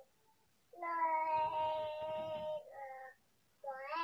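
Three high-pitched, drawn-out calls: a long, fairly steady one starting about a second in, a short one near three seconds, and a brief one rising in pitch at the end.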